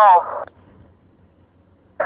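A man's voice over CB radio breaks off about half a second in, leaving a faint low hum until the next transmission begins at the very end.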